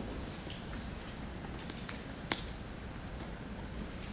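Hushed concert hall as an orchestra waits to play: low steady room hum with faint rustles and small clicks, and one sharp click a little past halfway.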